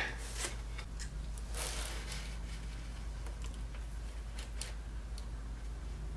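Faint handling noises at a sculptor's workbench as a clay figure and its armature are moved aside: a few soft clicks and a brief rustle, over a steady low hum.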